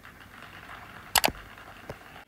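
Applause in a film soundtrack, played through a TV's speakers. Two sharp knocks come a little past the middle and a smaller one near the end.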